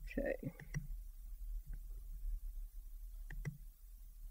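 A few faint, scattered clicks over a steady low electrical hum, after a single spoken word.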